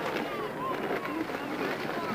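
Indistinct voices talking in the background.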